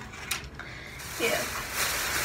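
Rustling and crinkling of shopping packaging as items are handled, turning into a louder hissing rustle about a second in.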